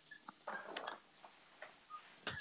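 Faint scattered clicks and ticks over a quiet background hiss.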